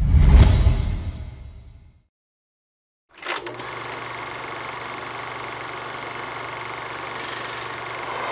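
Title-card sound effects: a deep whooshing swell that fades out over about two seconds, a short silence, then a sudden hit that opens into a steady sustained drone with several held tones.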